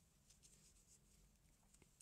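Near silence: room tone with a few faint, soft ticks as a crochet hook works yarn by hand.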